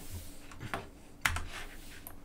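Two clicks of a computer keyboard key about half a second apart, the second louder with a low thud, as a key is pressed to advance the slide.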